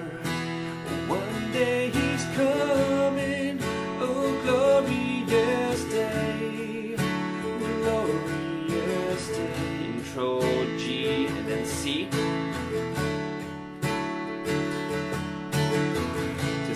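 Steel-string acoustic guitar with a capo on the second fret, strummed steadily in a down-up pattern through G, D, E minor and C chord shapes, so that it sounds in A. A man sings the chorus melody over the strumming.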